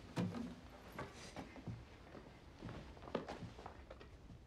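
A few soft footsteps and light knocks in a small room, irregularly spaced, over a faint background hum.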